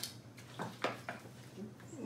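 A man drinking from a plastic water bottle: a few short, quiet swallowing and bottle-handling sounds, the sharpest a little under a second in.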